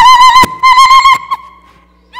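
Ululation (ililta): a high voice trilling in a fast warble, in two loud bursts with a sharp click between them, then a held note that fades out near the end.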